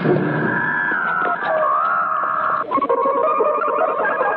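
Eerie electronic warbling tones from a 1950s science-fiction film soundtrack: a recorded alien 'voice' played back from a crystal through a laboratory machine. A few held, wavering tones that step down in pitch twice.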